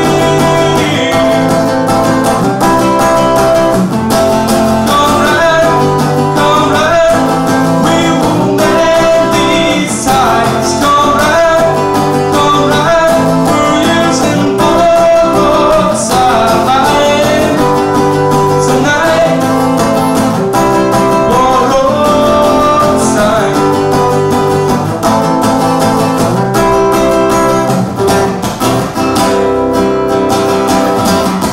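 Acoustic guitar strummed in a steady rhythm through a passage of a folk-pop song, with a melodic line moving over the chords.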